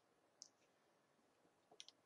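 Near silence with faint computer mouse clicks: a single click about half a second in, then a quick run of soft clicks near the end.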